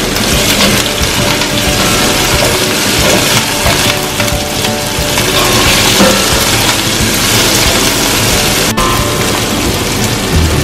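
Chopped onion, garlic and tomato sizzling in hot oil in a stainless steel pot as they are stirred: a steady frying hiss. It cuts out for an instant near the end.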